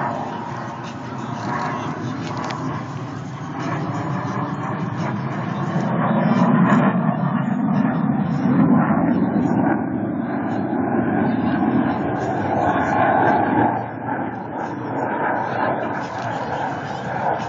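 Jet noise from a MiG-29 fighter's twin turbofan engines in flight, a broad rumble that grows louder about six seconds in and stays up for most of the rest. People's voices are heard over it.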